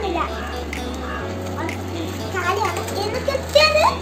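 A young girl's high voice over background music whose low bass note changes about every two seconds.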